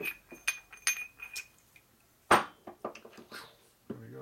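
Steel transmission gears and washers clinking against each other and the steel bench as they are handled and fitted onto a gearbox shaft: several quick ringing clinks in the first second and a half, then one louder knock a little past halfway.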